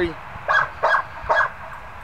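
A dog barking three short times, about a second apart.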